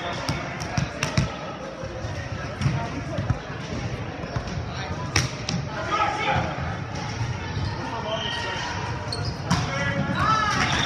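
Volleyball being played in a gym: sharp slaps of the ball against hands and arms, scattered through the rally, the loudest about five seconds in, ringing in a large echoing hall. Players call out about six seconds in and again near the end.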